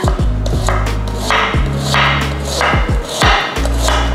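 Background music with a deep, steady bass line.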